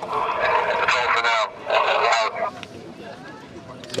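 A small group laughing in two breathy bursts over the first two seconds, then a quieter lull.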